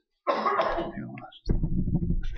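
A man coughing and clearing his throat close to a microphone, followed about halfway through by a loud low thump and rumble.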